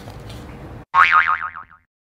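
A cartoon 'boing' sound effect added in editing: a wobbling tone that falls in pitch for just under a second, starting suddenly about a second in and cut off sharply into dead silence.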